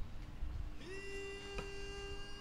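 Reedy, buzzy wind note, most likely the sralai oboe of Kun Khmer ringside music. It slides up slightly about a second in, then holds one long steady note over low crowd noise, with a single sharp click near the end.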